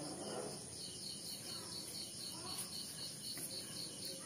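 Faint, steady, rapid high-pitched pulsing, like a chirping cricket. A few soft bird chirps come through in the middle, from the caged Bengalese finches.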